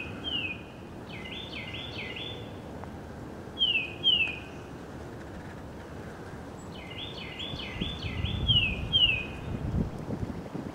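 A songbird singing clear whistled phrases, twice. Each phrase is a run of slurred notes ending in two loud, quick downslurred whistles, heard over a steady low background rumble.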